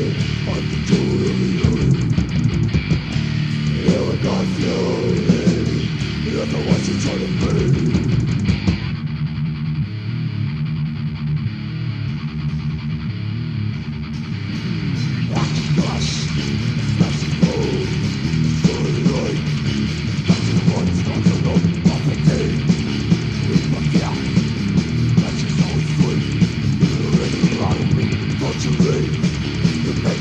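Death metal demo recording from 1994: heavily distorted electric guitar riffing over bass and drums. About nine seconds in the cymbals and top end drop away for some six seconds, and they come back in about fifteen seconds in.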